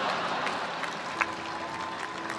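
Audience applauding in a large hall: a steady wash of many hands clapping. A faint steady tone joins about a second in.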